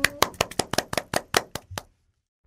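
Hand clapping: about a dozen sharp claps that stop shortly before the end.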